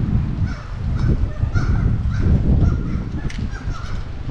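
Black-legged kittiwakes calling at their nesting cliff, short harsh calls about two a second, over a loud steady low rumble.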